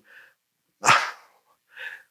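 A man's short, breathy intake of breath about a second in, between phrases of speech, close on the microphone, with faint mouth sounds just before and after.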